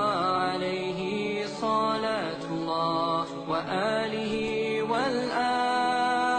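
Slow devotional chant: a single voice holding long, steady notes that slide up or down into the next one.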